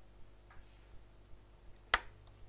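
Faint room hum, then near the end one sharp click as the DT-516A analog oscilloscope's push-button power switch is pressed on. Right after it, a thin high-pitched whine starts and rises in pitch as the scope powers up.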